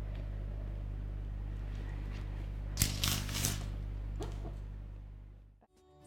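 Metal palette knife scraping and smearing chocolate ganache on a cake: a few short, soft scrapes about three seconds in and again a little after four seconds, over a steady low hum. The sound fades out near the end.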